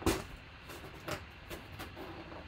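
Cardboard box being opened, its security tape tearing: one sharp crack at the start, then about four lighter scrapes and clicks of cardboard as the lid is lifted.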